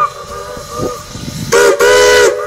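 Steam whistle of Norfolk & Western No. 475, a steam locomotive, sounding a chord of several close notes whose pitch bends as the engineer works the valve, the Strasburg 'ghost whistle'. It moans softly at first, then two loud blasts come near the end.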